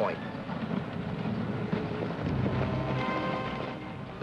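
Background orchestral music with held notes, over a low rumbling noise.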